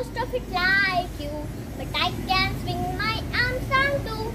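A young girl's voice reciting a rhyming poem in a sing-song chant.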